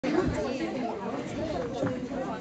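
Several people talking at once: chatter of voices in a small live venue before the song begins.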